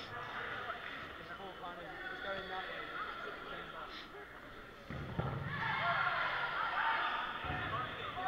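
Overlapping chatter of many players in a sports hall, getting louder about five seconds in, with a couple of dull thuds of dodgeballs bouncing on the hall floor.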